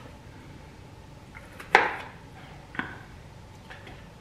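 A knife cutting a piece off an ear of corn, knocking sharply down onto a cutting board twice, about a second apart, with a couple of fainter taps.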